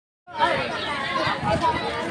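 Chatter of several voices talking over one another, children's voices among them, starting about a quarter second in.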